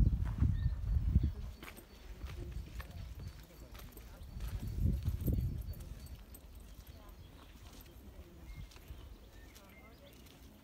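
Wind buffeting an outdoor microphone in low rumbling gusts, loudest in the first second or so and again around five seconds in. Faint footsteps on a path sound between the gusts.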